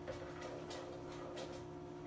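A few faint clicks, under a second apart, of a utensil tapping a stainless steel saucepan as it is stirred on the stove.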